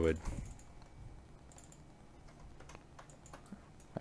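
Faint, scattered taps and clicks on a computer keyboard.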